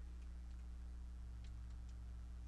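A few faint, light clicks of small plastic LEGO minifigure parts being handled as the hairpiece is worked onto the head, mostly in the second half, over a steady low hum.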